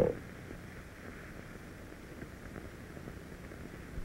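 Steady low hiss with a few faint ticks: the background noise of an old film print's soundtrack, heard in the gap between two 1950s commercials.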